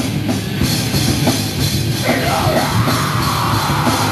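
Live heavy metal band playing loud, with distorted electric guitars and a drum kit. A shouted vocal comes in about halfway through.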